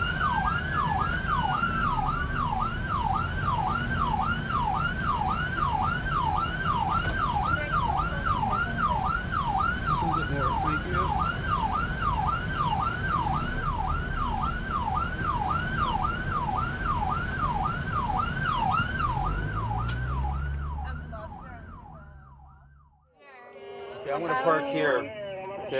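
Ambulance siren on a fast yelp, about two rising-and-falling sweeps a second, heard from inside the cab over engine and road noise. It fades away about twenty seconds in.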